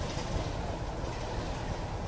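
Class 33 'Crompton' diesel locomotive idling, its Sulzer eight-cylinder engine running steadily and low-pitched.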